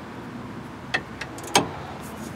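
A few sharp clicks from a GearWrench 120XP ratcheting wrench working a three-quarter-inch bolt that is already tight and resisting, over steady background noise.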